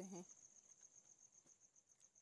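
Near silence after the last word of speech, with a faint, steady high-pitched whine in the background.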